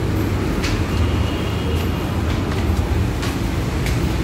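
Steady low rumbling noise with a few faint taps.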